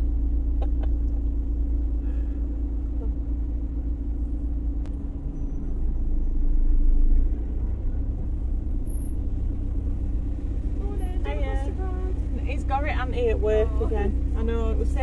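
Steady low rumble of a car's engine heard from inside the cabin as the car creeps forward, swelling briefly about halfway through. Indistinct voices come in near the end.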